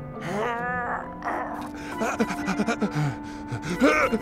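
Cartoon soundtrack: background music under a wavering, wailing vocal cry about half a second in, followed by a run of short gasps and grunts toward the end.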